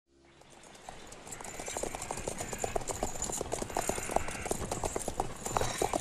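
Horse hooves clip-clopping in a steady run of hoofbeats, fading in from silence over the first couple of seconds.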